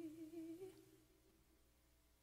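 A woman's unaccompanied held sung note with vibrato, fading away and ending under a second in, followed by near silence.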